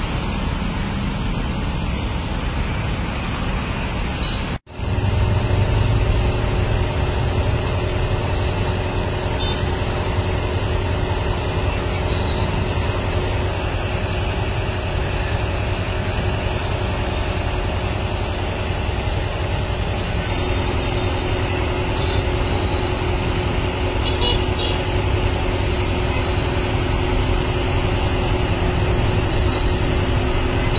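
Steady roadside traffic and street noise with a low hum, broken once by a brief dropout about five seconds in.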